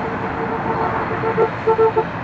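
Street traffic passing, with a car horn held steadily and then sounded in a few short honks near the end.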